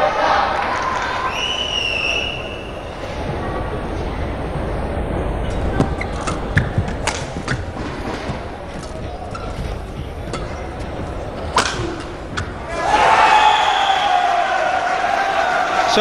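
Badminton rally in a full arena: sharp racket strikes on the shuttlecock stand out over a steady crowd din, most between about six and twelve seconds in. After the last hit the crowd swells into loud cheering and shouting as the point is won.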